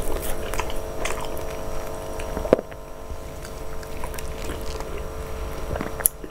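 Close-up mouth sounds of eating fufu with peanut soup by hand: chewing and finger licking, with scattered wet clicks and one sharp click about two and a half seconds in. A steady hum sits behind it and fades at that click.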